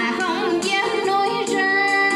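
A voice singing a line of a Vietnamese song in held notes over a karaoke backing track.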